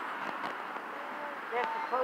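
Faint, distant voices over a steady background hiss, with a nearer voice saying "thank you" near the end.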